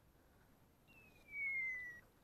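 A high, thin whistle gliding down in pitch, about a second long, starting about a second in.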